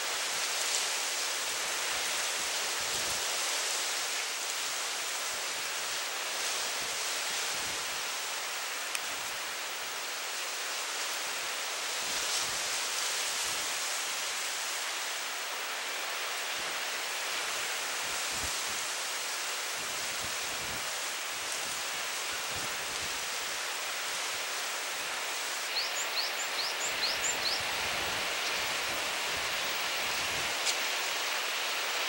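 Steady rushing wash of sea surf along a rocky coast. Near the end a bird gives a quick run of about five high, short calls.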